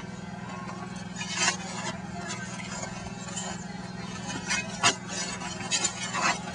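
Shovels digging into soil: a few scrapes and sharp strikes of metal blades biting into the dirt, the clearest about a second and a half in and just before five seconds.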